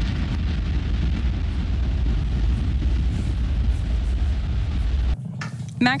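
Falcon 9 first-stage engines (nine Merlin 1D) firing during ascent: a steady, deep rumble of rocket exhaust noise that cuts off suddenly about five seconds in.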